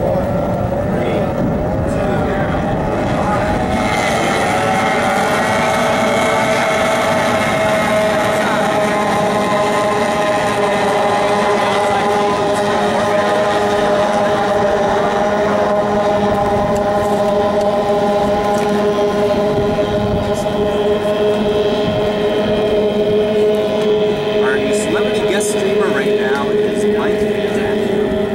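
A pack of small two-stroke racing outboard motors on stock outboard runabouts running flat out, several engine notes blending into one steady drone. The notes shift in pitch during the first few seconds, then hold steady.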